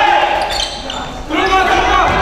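A basketball being dribbled on a hardwood gym floor, its bounces echoing in the hall, with players' voices calling out.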